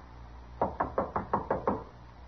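Knuckles knocking on a wooden door, a quick run of seven raps about six a second, a radio-drama sound effect.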